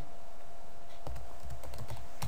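Computer keyboard typing a word: a few light, separate keystrokes, mostly in the second half.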